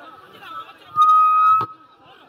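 A loud, steady, high whistle-like tone sounds for about half a second over crowd chatter, then stops abruptly with a click.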